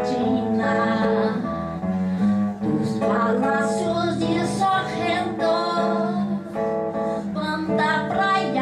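A woman singing into a microphone, accompanied by a strummed acoustic guitar.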